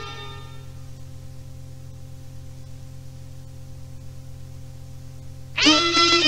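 The last notes of a fiddle-led Balkan folk song ring out and fade in the first second, leaving a faint steady low hum. About five and a half seconds in, the next song starts abruptly with fiddle and band.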